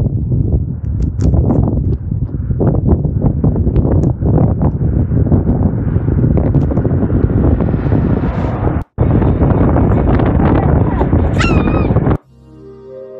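Wind buffeting the microphone with rough, irregular thumps, while an SUV approaches along the road, its noise building for about eight seconds. The sound cuts out briefly about nine seconds in, and a short high-pitched cry sounds near the end.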